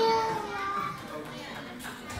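A young child's high voice finishing 'thank you' into a microphone, the last word held for about half a second, followed by the low chatter of many children in a large hall.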